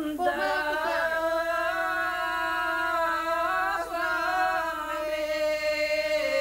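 A group of village women singing a traditional Bulgarian koleda ritual song unaccompanied, the song for kneading the white Christmas bread (pogacha). They hold long, steady notes.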